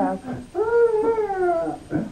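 A child's long, wordless vocal sound, starting about half a second in, held for over a second and sliding slightly down in pitch.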